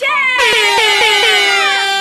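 A loud, horn-like sound effect starting about half a second in, held and sliding slowly down in pitch.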